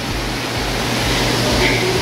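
Steady rushing background noise of an indoor aquarium hall, an even hiss over a constant low hum, with no distinct event standing out.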